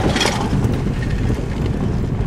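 Steady low rumble of a car driving slowly on a rough gravel road, heard from inside the cabin: tyre, road and engine noise. Near the start there is a brief rush as an oncoming car passes close by.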